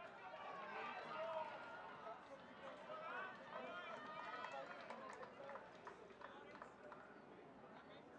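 Faint, indistinct shouting from rugby players and spectators during open play, with a few short clicks about five to seven seconds in.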